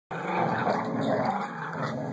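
Two dogs growling continuously as they play tug-of-war over a rope toy.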